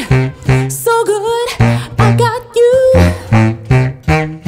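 A woman singing held notes with vibrato over a tubax, a contrabass saxophone, playing short detached low bass notes in a steady pulse.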